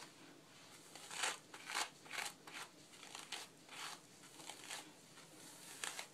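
A hairbrush pulled through a section of hair, making about ten faint brushing strokes.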